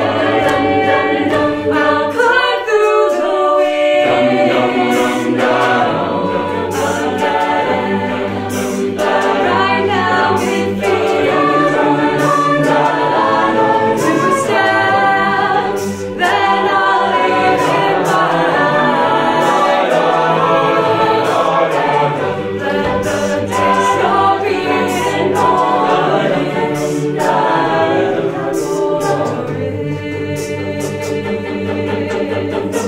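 A cappella vocal group singing in harmony, voices only, with crisp percussive ticks keeping the beat; the sound drops out briefly about halfway through.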